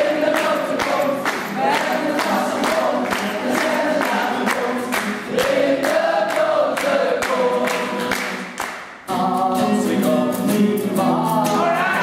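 Many voices singing together to strummed acoustic guitars, with a steady rhythmic beat of strums or claps. The sound dips sharply about nine seconds in, then carries on.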